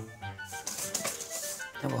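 Salt poured into a stainless steel bowl of beaten egg white and worked with a wire whisk, a dry rattling hiss lasting about a second, over background music.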